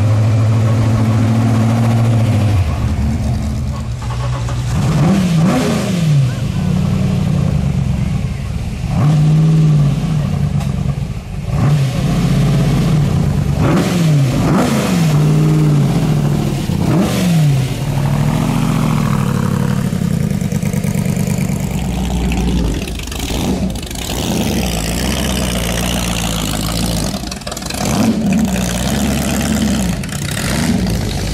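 Ford GT40 race cars' V8 engines running low and blipping the throttle as the cars roll slowly past, the pitch rising and falling in short revs every second or two. A high whine sweeps up and down in the last third.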